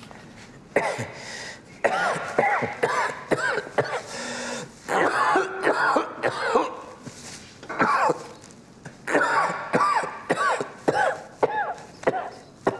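A man coughing in several harsh fits, each a quick run of coughs with short breaks between the fits.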